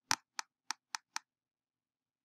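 Five quick computer mouse clicks, about four a second, the first the loudest, stepping a font size down in Illustrator's size field.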